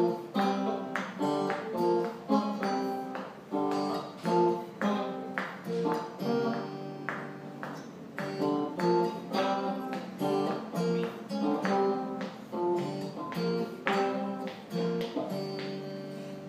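Solid-body electric guitar played through an amp, picked chords and notes struck about twice a second, each ringing and fading before the next.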